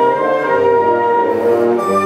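Symphonic wind band, with brass, woodwinds and cellos, playing a concert pasodoble in full sustained chords at a steady loud level.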